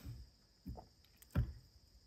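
A few faint clicks and a light knock of small metal parts handled by hand: a steel pin being lined up in the spring-loaded latch of an engine-hoist hook clamped in a bench vise. The loudest is a short knock a little past halfway.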